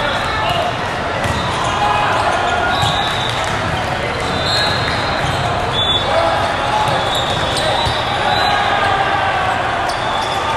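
Steady babble of many voices in a large echoing sports hall, with volleyballs being struck and bouncing as scattered sharp knocks.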